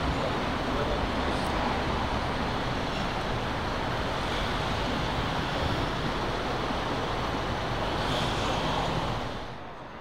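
Steady road traffic noise from cars passing close by. It drops to a quieter hum near the end.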